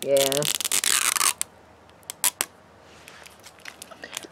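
Thin plastic wrapping on a toy surprise ball being peeled and crinkled by hand for about a second, tearing off in small pieces, followed by two light clicks a little past halfway and faint rustling.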